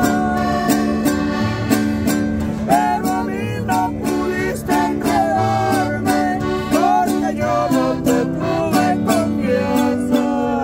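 Live acoustic guitar and accordion playing a steady, repeating bass-and-chord accompaniment. A woman sings a bending, gliding melody over it.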